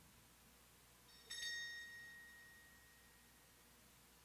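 A single strike of an altar bell, ringing clearly and fading away over about a second and a half, marking the elevation of the chalice at the consecration.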